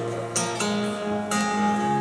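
Live acoustic guitar strummed in a slow song, with two strong strums about half a second in and just past the middle, over held notes ringing underneath.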